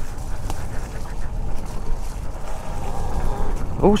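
Talaria X3 electric trail bike riding along a muddy woodland trail: a steady rumble of tyres, drivetrain and wind with a few small knocks, and no engine note. A short spoken 'Oh' comes right at the end.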